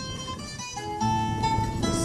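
Acoustic guitar playing the accompaniment on its own between sung verses: a few plucked notes that ring on, with fresh notes about a second in.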